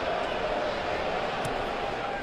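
Football stadium crowd noise: a steady wash of spectators.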